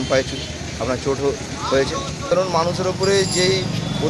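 A man talking to an interviewer's microphone, with a steady low engine hum behind him that grows stronger about halfway through.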